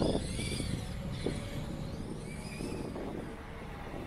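HS18322 1:18 scale 4WD RC buggy driving on grass: its brushed RC380 electric motor gives a faint whine that rises and falls with the throttle over the noise of the drivetrain and tyres. Loudest at the start, fading as the car drives away.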